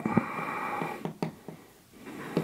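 A person's breathy, nasal sound lasting about a second, with several light taps scattered through it.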